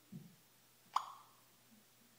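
A soft low thump, then about a second in a single short, plopping electronic blip from the iPhone's voice-assistant app as it handles a spoken question.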